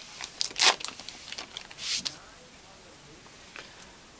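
Foil Pokémon booster-pack wrapper crinkling and rustling as the freshly torn pack is pulled apart and the cards are slid out. It comes in a few short bursts in the first two seconds, the loudest a little over half a second in, then dies down.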